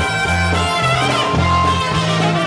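A live polka band playing an instrumental passage on trumpet, saxophone, bass guitar and drums, with the bass line stepping from note to note about every half second.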